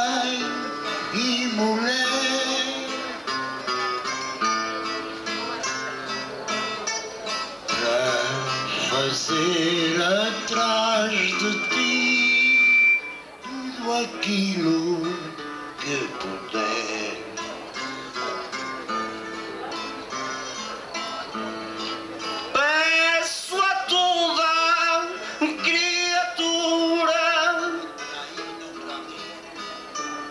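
Live folk-style music: a man singing into a microphone, accompanied by guitars and other plucked string instruments. The singing grows louder from about two-thirds of the way in.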